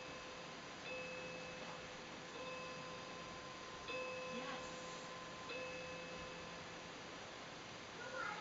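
A phone ringing in the background: a soft chime-like tone repeating evenly about every second and a half, four times, then stopping.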